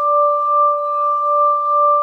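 Crystal singing bowls holding two steady ringing tones, one an octave above the other, that waver in loudness about twice a second.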